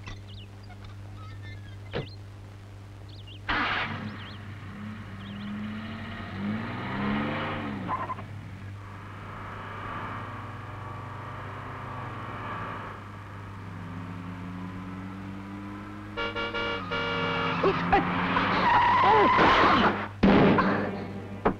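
Car engine starting up and revving, its pitch rising and falling as it drives off, growing loudest near the end with a tyre skid.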